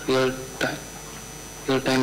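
A steady electrical hum with two short snatches of speech, one just after the start and one near the end.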